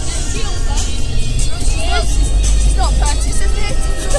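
Music playing loudly over a car stereo, with heavy bass, and people's voices over it inside the car cabin.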